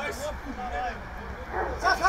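Short, high-pitched vocal calls, a few in quick succession, loudest near the end, over a steady low rumble.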